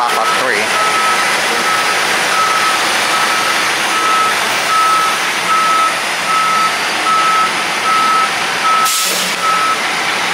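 NJ Transit highway coach backing out of its bay, its reversing alarm beeping steadily at one pitch a little faster than once a second over the running engine. A short hiss of air comes near the end.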